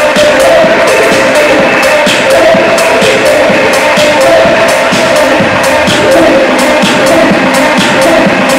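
Loud techno played live through a club sound system: a steady beat with a high percussive click about twice a second over a sustained synth tone, thin in the bass.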